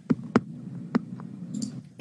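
Computer mouse clicking a few times: short, separate sharp clicks spread over two seconds, over a low steady hum.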